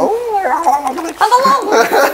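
A person's voice in drawn-out, wavering exclamations, its pitch sliding up and down, during laughter.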